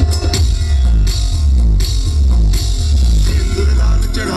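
Loud dance music with a heavy drum beat and bass, the beat accented about every three-quarters of a second and the bass sliding down in repeated runs.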